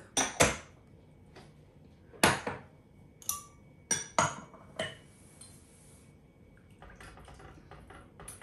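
Kitchenware clinking against a small metal saucepan and the counter as a spatula and containers are handled: about seven sharp knocks with short ringing tails in the first five seconds, then quieter handling.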